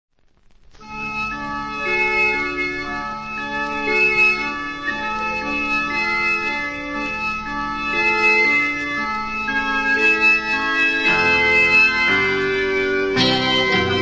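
Instrumental song intro led by organ holding chords that change every second or so, fading in over the first second. More instruments come in about eleven seconds in, and the band fills out just before the end.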